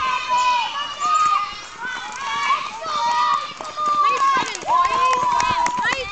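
High-pitched children's voices shouting and cheering over one another as they urge on runners in a footrace, with a long held shout near the end.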